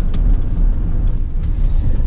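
Ford pickup truck driving, heard from inside the cab: a steady low rumble of engine and road noise.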